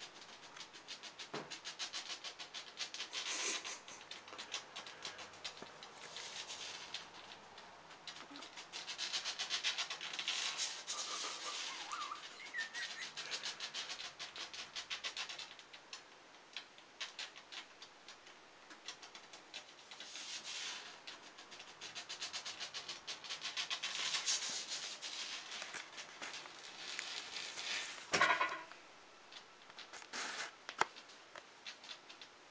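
A monitor lizard's claws scrabbling on the glass and frame of its enclosure: bursts of rapid clicking and scratching a few seconds long, with a louder scrape near the end as it climbs the glass.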